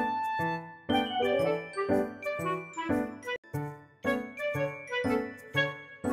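Light background music: chiming notes over a steady beat of about two a second, with a brief break a little past the middle.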